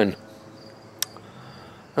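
Crickets chirping faintly and steadily in a high, even tone, with a single sharp click about a second in.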